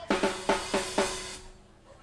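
Rock drum kit played in a short burst of about five quick strikes with a low ringing tone under them, dying away about a second and a half in.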